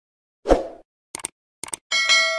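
Subscribe-button animation sound effects: a soft pop about half a second in, then two pairs of quick mouse clicks, and a bright bell ding that starts just before the end and rings on.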